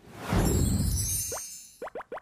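TV bumper transition sound effect: a whoosh with a deep low swell that fades out after about a second and a half, followed by a few short, quickly rising pops at the start of the show's logo jingle.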